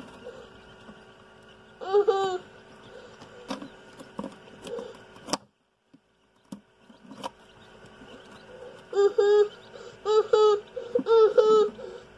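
A young child giggling in short high-pitched bursts, once about two seconds in and again in a run of giggles near the end, over the steady hum of a circulated-air egg incubator's fan.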